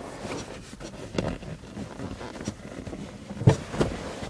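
Handling noise inside a car: rustling and a few scattered clicks and knocks as a hand moves over the back seat, the loudest knock about three and a half seconds in.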